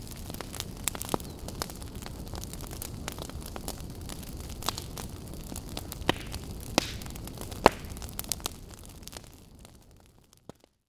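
A large fire burning: a steady low rumble with irregular sharp crackles and pops, fading out near the end.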